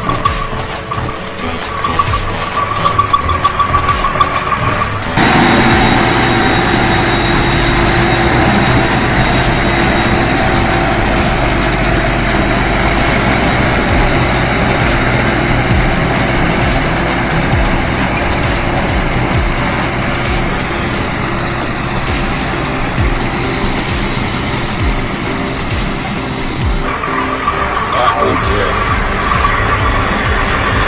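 Heavy trucks' diesel engines running under load. The sound changes abruptly about five seconds in and again near the end.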